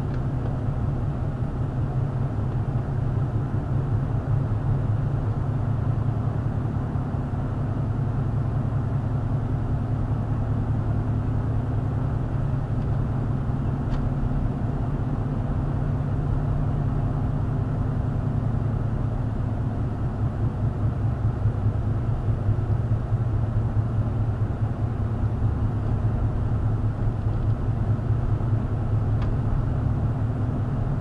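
Car driving steadily at about 25 to 30 mph, a low steady hum of engine and road noise heard from inside the cabin.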